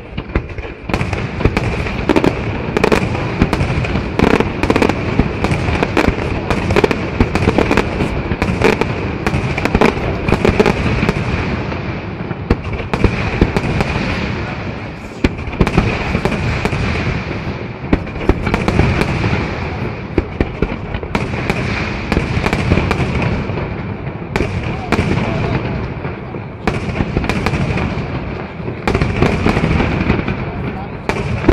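Aerial firework shells bursting in a continuous, dense barrage: many sharp cracks and bangs follow one another without a break, the loudness rising and falling in waves.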